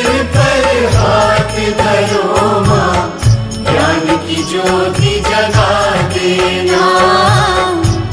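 Recorded Hindi devotional song to Saraswati, the goddess of knowledge (a Saraswati vandana), playing on with a held, wavering melody over a steady beat.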